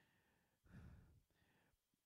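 Near silence, with one faint breath into a handheld microphone a little under a second in.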